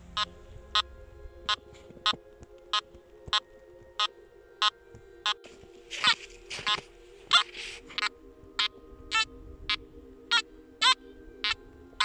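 Nokta Makro Simplex+ metal detector beeping as its coil is swept back and forth over an iron meteorite: one short beep on each pass, about one every 0.6 s, each pass a detection of the meteorite. A few beeps past the middle waver in pitch.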